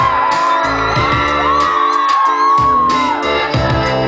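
A live pop-rock band playing loudly through the PA in a large hall, recorded from within the crowd, with whoops from the audience.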